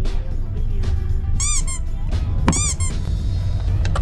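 Background music with two short, squeaky cartoon-style sound effects, each a quick run of rising-and-falling chirps, about a second apart. A low rumble of a car in motion runs underneath.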